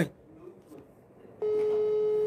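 Telephone ringback tone of an outgoing call: after a near-quiet start, a single steady beep begins about halfway through and lasts about a second.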